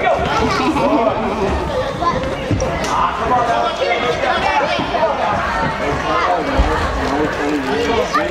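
Many overlapping, indistinct voices of spectators and players calling out, with the echo of a large indoor hall.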